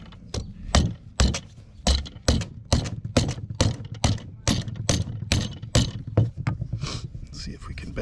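Rubber mallet repeatedly striking a steel strap hinge clamped in a bench vise, bending it over at a right angle. A steady run of blows, about two to three a second.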